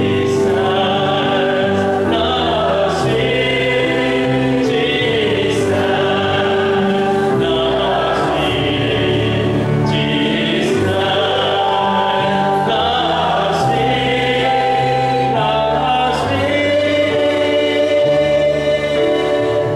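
Gospel worship song: an electronic keyboard plays sustained chords over a moving bass while a man sings and a group of voices sings along.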